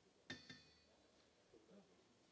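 Near silence with two faint, sharp clicks about a fifth of a second apart, a third of a second in, each ringing briefly.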